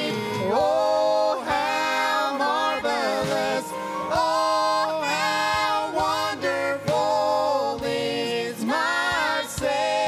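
A gospel song sung by a vocal trio of two men and a woman into microphones, the voices held in long sung notes that glide between pitches.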